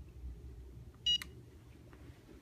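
A phone handset gives one short electronic beep about a second in, followed by a small click.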